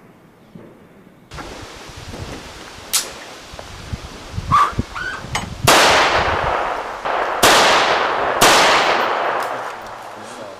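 Three loud, sudden bangs in the second half, each dying away over a second or more, after a few sharper knocks.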